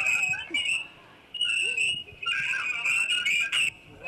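High-pitched whistling squeal on a phone-in line, like dolphins, coming in several stretches with a short break about a second in. It is audio feedback, which the host blames on the caller's television being turned up.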